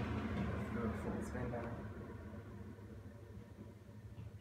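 Imasu ceiling-mounted centrifugal bathroom exhaust fan spinning down after being switched off, its low hum and rush of air fading away steadily.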